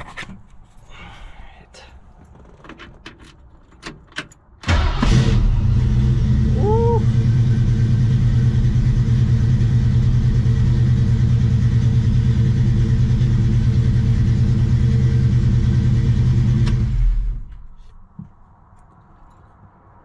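A freshly installed starter turns the 1969 Mustang's 351 Windsor V8, which catches almost at once, about four and a half seconds in, after a few key and seat clicks. The engine then runs at a steady idle for about twelve seconds before it is switched off and cuts out. It is heard from the driver's seat inside the car.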